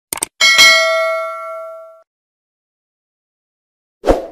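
Subscribe-animation sound effect: two quick clicks, then a bright bell ding that rings out and fades over about a second and a half.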